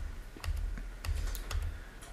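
A few sharp computer keyboard key clicks, some in quick pairs, with soft low thumps on the desk, as keys are pressed to advance the slides of a PowerPoint slideshow.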